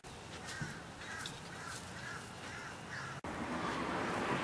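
A bird calling in an even series of about six short, arched calls, roughly two a second, over outdoor background noise; the sound cuts out abruptly just after three seconds.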